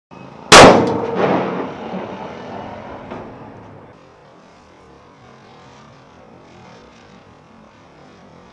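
A sutli bomb (a string-wrapped Indian firecracker) exploding inside a Royal Enfield Bullet's chrome exhaust silencer: one very loud bang about half a second in, echoing and dying away over about three seconds.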